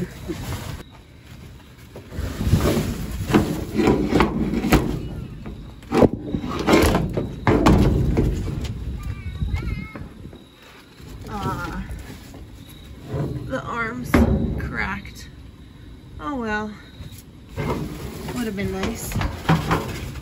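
Cardboard boxes shifted and dragged inside a dumpster: loud rustling and scraping for several seconds, with a few sharp thumps, the sharpest about six seconds in and another near fourteen seconds. Quieter rummaging follows, with short voice-like sounds.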